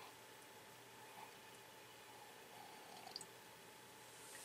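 Near silence: faint sipping of coffee from a mug, with a couple of tiny clicks about three seconds in.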